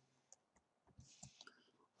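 Near silence with a few faint computer keyboard clicks, keys tapped singly as code is typed.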